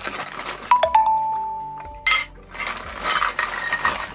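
Brass pooja pieces knocking together inside a paper bag: a couple of metallic clinks about a second in that ring on for about a second. Then the paper bag rustles as a hand rummages in it.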